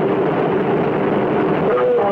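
Steady loud hiss and rumble, with a faint, muffled voice-like warble coming through near the end.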